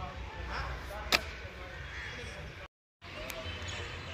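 Faint background voices with a single sharp smack about a second in and a smaller click later. The sound cuts out completely for a moment past the middle.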